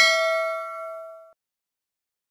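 Bell-like 'ding' sound effect of a subscribe-button animation, a bright chime ringing out and fading away within about a second and a half.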